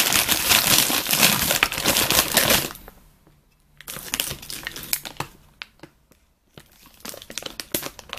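Plastic bag of single-serve coffee creamer cups crinkling as hands rummage in it. There is a long loud burst of rustling for the first two to three seconds, a shorter bout around four to five seconds in, and another near the end with small sharp clicks.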